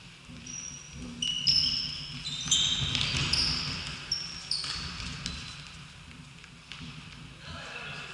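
Indoor futsal play in a reverberant sports hall: sports shoes squeaking sharply on the court floor, with the thuds of the ball being kicked. The squeaks are busiest in the first half.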